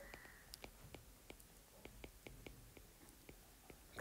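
Near silence with a series of faint, sharp ticks at irregular intervals: a stylus tip tapping on a tablet's glass screen while words are handwritten.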